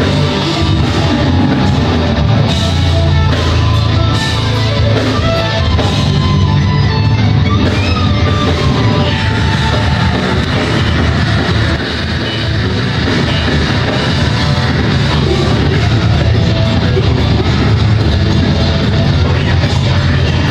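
Heavy metal band playing live: distorted electric guitars, bass and a drum kit, loud and dense throughout, with a brief dip in loudness about twelve seconds in.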